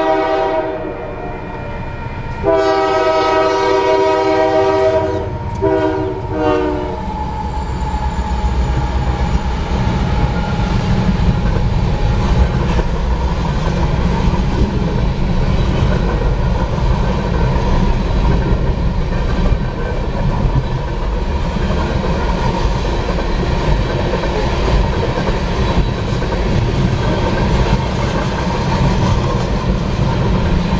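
Horn of a Union Pacific GE AC44CW freight locomotive sounding for a grade crossing, several notes together: one blast ends just after the start, then a longer blast of about four seconds breaks twice briefly near its end. From about seven seconds in, the freight cars roll past with a steady rumble and wheel clatter.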